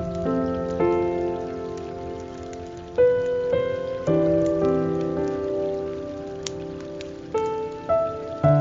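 Slow, soft guitar music: single plucked notes and chords ringing out one after another, with fresh notes about a second in, at three and four seconds, and again near the end. Under it runs a steady hiss of falling water.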